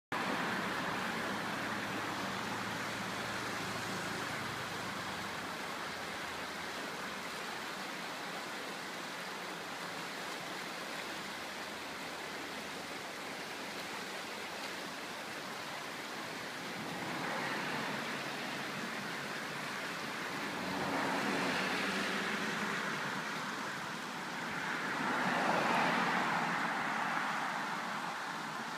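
Steady rushing of a fast mountain river running over rocks. In the second half, three vehicles pass on a road, each swelling up and fading away over the river noise.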